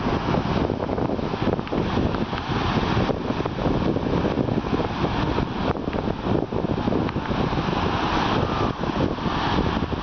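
Wind buffeting the camera microphone with a loud, uneven rumble, over the wash of breaking surf.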